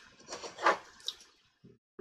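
Short, soft wet puffs and sucking sounds of someone drawing on a lit tobacco pipe, the loudest a little over half a second in.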